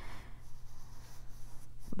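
Paintbrush strokes on a canvas shopping bag: faint brushing and scratching of the bristles against the fabric as yellow paint is worked in.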